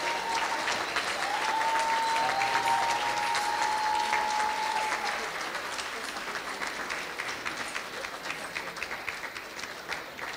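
Audience applauding, many hands clapping, gradually dying away through the second half.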